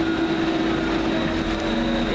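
Steady machinery drone with a constant high-pitched whine running through it; a lower humming tone fades out about halfway.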